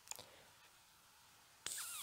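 Near silence with a faint click or two just after the start, then an audible breath drawn in near the end.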